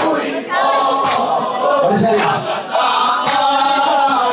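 Group of men chanting a Shia mourning lament (nauha) in unison, with loud chest-beating strikes (matam) on the beat about once a second.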